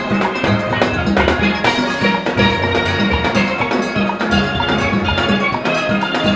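A full steel band playing: many steelpans of different ranges struck with sticks, over a drum kit keeping a steady beat.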